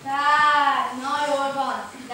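A child's voice speaking on stage in two long, drawn-out syllables.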